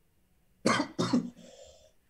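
A person coughing twice in quick succession, heard through a video-call microphone.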